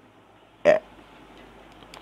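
A man's brief hesitation sound, a single short "uh" a little over half a second in, with only faint room noise around it.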